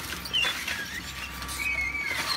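An industrial shredder, the Tongli DS40130, tearing up waste wood and branches. Scattered cracks and short high squeals sound over a steady low hum from the machine's drive.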